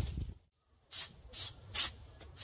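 Long-handled yard tool swept over a concrete walkway edge, clearing grass debris: three quick brushing strokes, the last the loudest.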